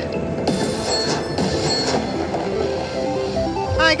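Video slot machine's electronic bonus-feature music and chimes as the cash-spin reels spin and land, ending on a mini jackpot award.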